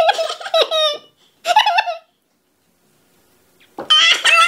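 Two short bursts of high-pitched vocal squealing and giggling in the first two seconds, then a brief quiet, then loud laughter starting near the end.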